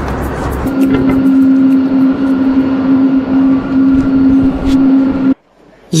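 Jet airliner engines running with a steady droning hum that cuts off suddenly about five seconds in.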